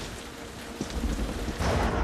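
Rain pattering on a car's roof and windows, heard from inside the car, with a low rumble underneath that grows louder near the end.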